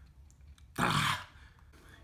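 A man clears his throat once, a short harsh burst about a second in.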